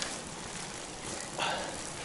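Steady noise of riding a road bicycle on a wet road: tyre hiss and wind on the microphone, with a brief louder rush about a second and a half in.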